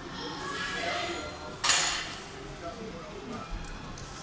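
A single brief, sharp clatter about one and a half seconds in, the loudest sound, against faint background voices.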